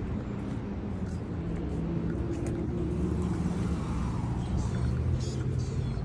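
Low, steady rumble of a motor vehicle, growing a little louder in the middle.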